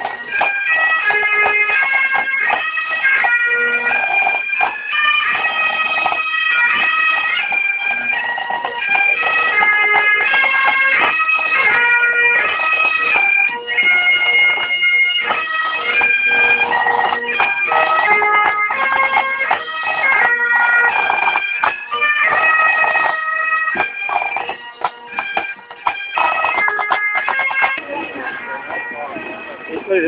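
A pipe band's bagpipes playing a marching tune, a melody of held notes over the drone. The sound grows fainter over the last few seconds as the band moves past.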